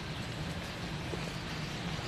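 Steady background hum and hiss of a large store's interior, with a constant low hum and no distinct events.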